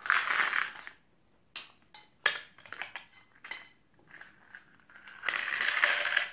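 Pasta pieces rattling and scraping as a toddler stirs them in a small toy pot. It comes in two bursts of about a second each, one at the start and one near the end, with light clinks of toy cookware and spoon between.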